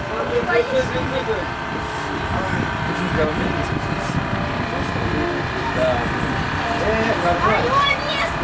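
Spectators at a BMX track shouting and cheering on young riders, a steady mix of overlapping voices with louder, higher-pitched calls near the end.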